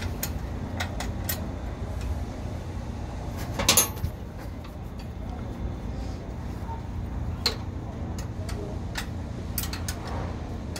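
Light metallic clicks of a spanner working a nut on an AirMan compressor's engine-speed adjustment, irregular and scattered, with one louder clattering clank about four seconds in. A steady low rumble underlies it.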